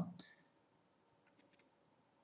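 Two faint computer mouse clicks about a second and a half in, picking a point in the software; otherwise near silence.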